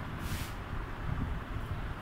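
Felt-tip marker writing on a whiteboard, with one brief scratchy hiss of a stroke about a third of a second in. Under it runs a steady low rumble of background noise.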